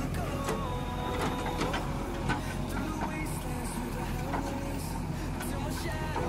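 JCB 3DX backhoe loader's four-cylinder diesel engine running steadily under hydraulic load as the backhoe arm digs and swings soil. Tones shift up and down in pitch above the engine note, with a few short knocks, the loudest about two seconds in.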